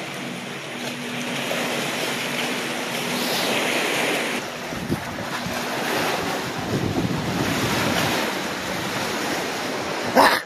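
Small waves washing and breaking among rocks at the shoreline, with wind buffeting the microphone; the wash swells louder twice.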